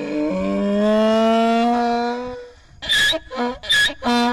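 Donkey braying: one long drawn-out note, then from about three seconds in the rapid alternating shrill and low hee-haw cries.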